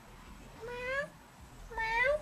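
A cat meowing twice. Each meow is short and rises in pitch: one about half a second in, the other near the end.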